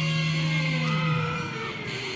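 Live rock band's electric guitar holding a long low note. The note slides down in pitch and drops away about a second and a half in, with other ringing guitar tones over it.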